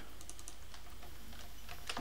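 Typing on a computer keyboard: a scattering of light key clicks.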